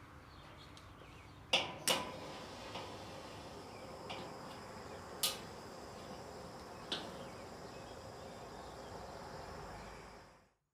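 Metal grill tongs clicking and tapping in an SNS charcoal kettle grill while lit charcoal is moved around: two sharp clicks about one and a half to two seconds in, then a few lighter taps, over a faint steady background.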